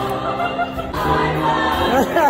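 Women's show choir singing held chords, with a change to a new chord about a second in.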